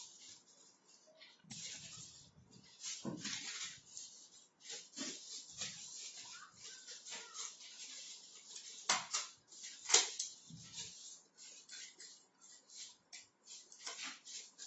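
Scissors cutting through cardboard and cut cardboard pieces being handled: irregular scraping and crunching snips and rustles, with two sharper, louder clicks about nine and ten seconds in.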